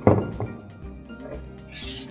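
A heavy thunk as the Sherline motor and speed control assembly is set down on the wooden table top, then a lighter knock about half a second later, over background music. A short hiss follows near the end.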